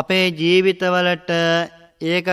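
A Buddhist monk's voice chanting in the slow, sung style of a traditional sermon: four or five syllables, each held on a steady pitch, with short breaks between them.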